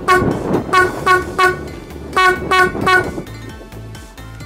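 A cheap 12V electric marine horn, a chrome single trumpet, sounding about seven short, loud toots in quick uneven bursts on one steady note, about an F-sharp, that stop about three seconds in.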